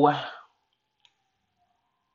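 The end of a drawn-out spoken "so" fades out in the first half-second. Then there is near silence with a single faint click about a second in.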